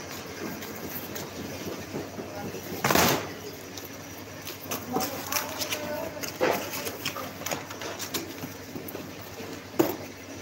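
Handling noise from okra pods being dropped and sorted into cardboard packing boxes: scattered clicks, knocks and rustles, with a loud burst of handling noise about three seconds in and a knock near the end as a box is closed and stacked.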